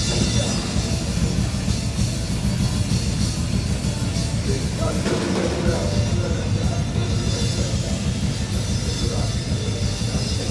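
Live punk rock band playing loud: electric guitars over a pounding drum kit, dense and continuous, with the lowest end dropping out for under a second about five seconds in.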